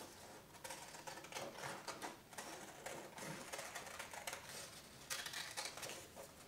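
Scissors cutting yellow construction paper: a faint, irregular run of short snips with the paper rustling as it is turned.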